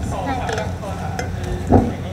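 Open-air stage ambience: a steady low rumble with faint voices in the background, and one short loud bump a little before the end.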